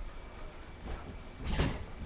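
Low handling noise from someone moving things off-camera, with a short clatter about three-quarters of the way through.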